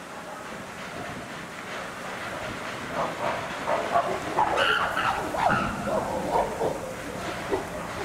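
Chimpanzees calling: a run of loud, short calls breaks out about three seconds in and keeps going.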